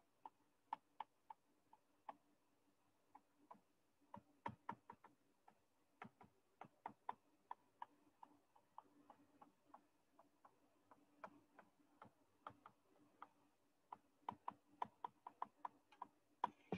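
Faint, irregular ticks and taps of a stylus pen on a tablet surface during handwriting, coming in quick clusters with short gaps between, over a faint steady hum.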